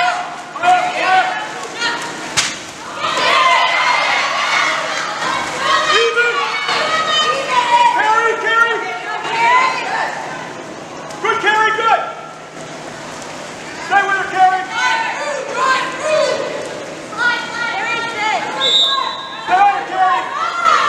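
Several voices of players, coaches and spectators shouting and calling across an indoor pool during a water polo game, with a sharp slap about two seconds in and a short high whistle blast near the end.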